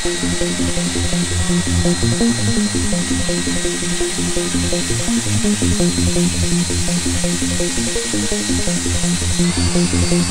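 Electronic dance music with a steady, driving beat. A steady high whine runs underneath and steps up slightly in pitch near the end.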